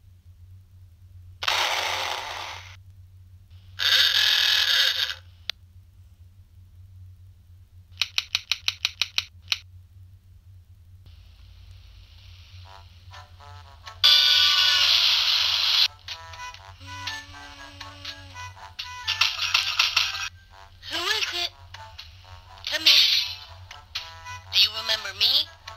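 Flipnote animation soundtrack played through a Nintendo DSi's small speaker: a string of separate sound clips, with bursts of noise, a quick run of about eight clicks, a held tone and short musical fragments, over a steady low hum.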